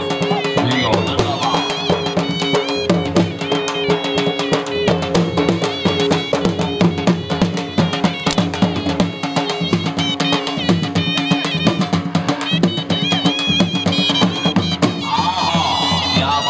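Dhol drumming, fast and continuous, with a wind instrument playing a wavering, ornamented melody over a steady held drone: folk music played for a horse dance.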